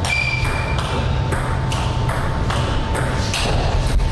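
Table tennis rally: the ball clicks sharply off the rackets and the table, a stroke every half second or so, over a steady low hum.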